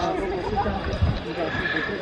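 Several people's voices talking over one another, with a couple of low thumps near the start and about a second in.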